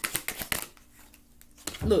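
A tarot deck being shuffled by hand: a quick run of card flicks that stops within the first second.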